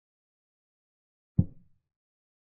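Move sound effect of an online chess board as a piece is placed: a single short, low knock about one and a half seconds in, dying away within about a third of a second.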